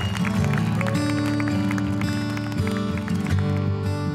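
Background music: a slow song with plucked notes over held, steady tones.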